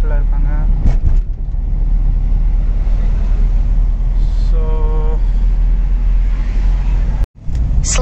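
Steady low rumble of engine and road noise inside a moving car's cabin at moderate speed. A click comes about a second in, a short pitched sound about halfway, and the sound drops out for a moment near the end.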